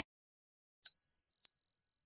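Notification-bell 'ding' sound effect: a single high bell tone strikes about a second in and rings on, fading slowly with a slight waver.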